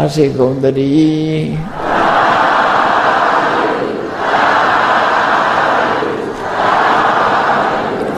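A monk's chanting voice for about the first second and a half, then a congregation calling out together in unison three times, each call about two seconds long.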